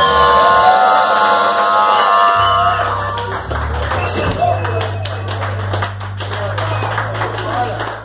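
A band's last electric guitar chord ringing out and fading over a steady amplifier hum, then audience clapping and cheering.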